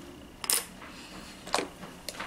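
Two sharp clicks about a second apart.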